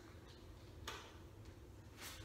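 Near silence: room tone with a single faint tick a little under a second in.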